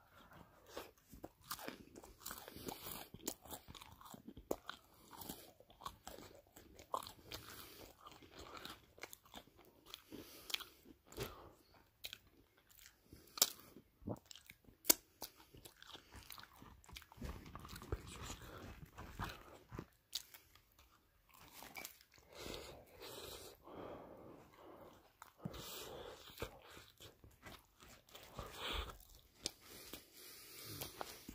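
Close-miked biting and chewing of crispy pizza, with irregular wet crunches throughout and two sharper, louder crunches about halfway through.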